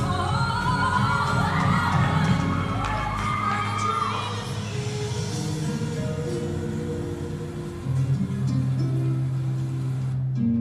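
Recorded music, with a sung vocal line gliding up and down for about the first four seconds, then settling into held instrumental notes.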